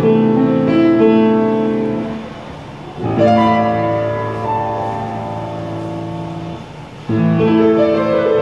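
Piano music: slow, held chords, with fresh chords struck about three seconds in and again about seven seconds in, each ringing on and fading.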